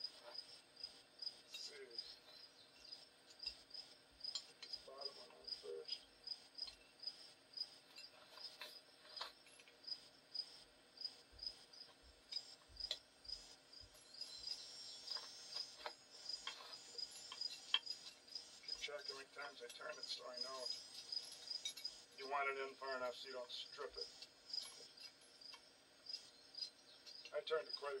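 Insects chirping steadily in the background, a high repeated chirp about twice a second, with scattered light metallic clicks and taps of a brake drum puller being handled and fitted.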